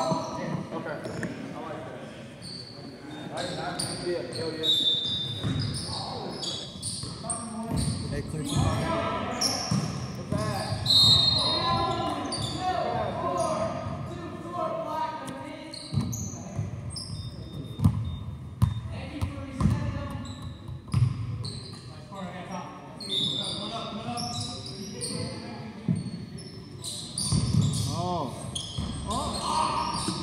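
Basketball bouncing on a hardwood gym floor, with scattered impacts and indistinct voices echoing in a large hall.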